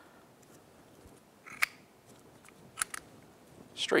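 Two sharp metallic clicks about a second apart as the new brake pads and a pad retaining pin are worked into a motorcycle's rear brake caliper, pushed in against the pad spring.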